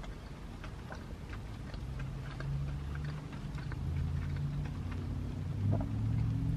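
Scattered light ticks of raindrops on a car body, heard inside the cabin. A low steady hum joins in about two seconds in and grows slowly louder.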